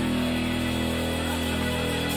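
Live rock band holding a steady, sustained chord, with no clear drum beat.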